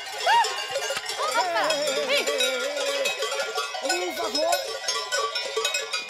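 Cowbells clanking on cattle being driven across an alpine pasture, with herders' shouted calls rising and falling over them.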